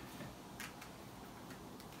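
A quiet room with a few faint, irregular clicks from whiteboard markers being handled and switched.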